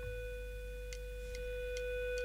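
A single steady held note from the opening of a rock song, with a few faint ticks over it.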